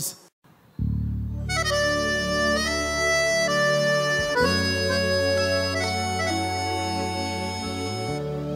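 Accordion playing a slow melody of long held notes over sustained low bass tones. It comes in about a second in after a short gap, as the intro of a forró/piseiro song.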